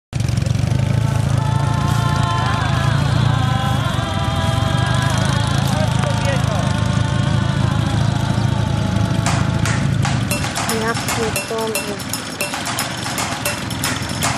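Flat-twin engines of several sidecar motorcycles running in a steady low drone, with a voice over them. From about ten seconds in the drone fades and a fast, regular ticking beat takes over.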